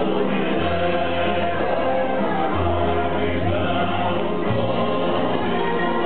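Busking band playing accordion, upright double bass, guitar and clarinet, with voices singing together. The double bass holds long low notes that change every second or so.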